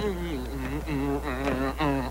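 A tune in a buzzy, nasal tone, with short notes stepping up and down and a slight waver on each.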